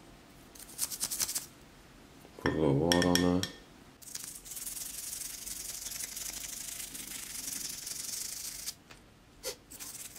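Toothbrush scrubbing a gold grill coated in toothpaste. A few quick scrapes come first, then steady, brisk scrubbing runs from about four seconds in to nearly nine seconds.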